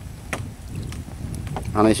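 A long-handled scoop net dipping and dragging in the water, with a few soft splashes over a low steady rumble. A man's voice comes in near the end.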